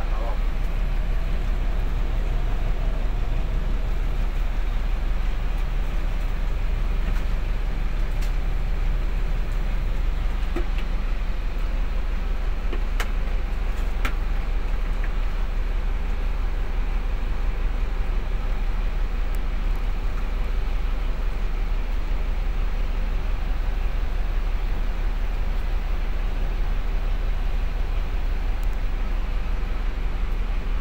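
Steady low rumble of a bus's idling diesel engine heard from inside the cabin, with a couple of faint clicks about halfway through.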